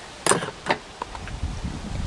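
Hands handling the twigs and foliage of a small-leaved honeysuckle bonsai: a couple of short clicks and light rustling, with a low wind rumble on the microphone building in the second half.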